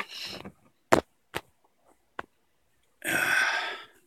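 Three sharp clicks from a small circuit board being handled, then a breathy exhale about a second long near the end, the loudest sound here.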